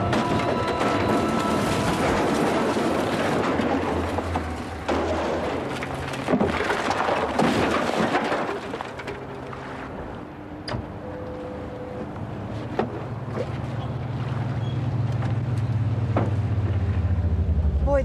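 A car smashing into a stack of wooden crates: a long run of crashing and clattering, with dramatic music at first. After that come a few single sharp knocks, and near the end a car engine growing louder.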